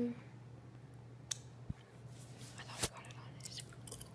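Faint scattered clicks and knocks over a low steady hum, the loudest click nearly three seconds in.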